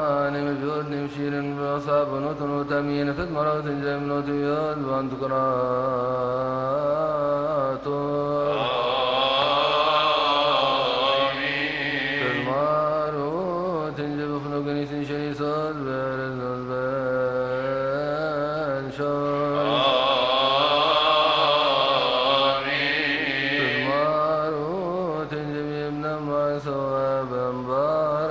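Coptic liturgical chant: male voices singing a slow, melismatic hymn, the melody winding up and down over a steadily held low note.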